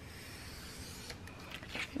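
Thin-bladed craft knife drawn along a ruler, slicing through scrapbook paper with light pressure: a faint, steady scratchy hiss as the blade gets through easily, with a few small ticks in the second half.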